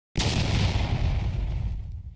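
Filmora9's stock "Explosion" sound effect playing from the editing timeline: a sudden blast a fraction of a second in, then a deep rumble that starts to die away near the end.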